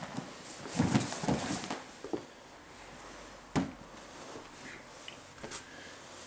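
Soft rustling and bumping of a grappler's gi and body rolling on foam floor mats and against a padded wall, with one sharp knock about three and a half seconds in.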